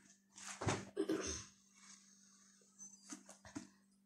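Faint hand-and-dough handling noises on a stone countertop: a soft rub in the first second or so, then a few light taps around three seconds in.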